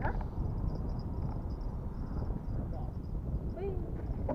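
Steady low rumble of wind buffeting the microphone, with faint voices now and then.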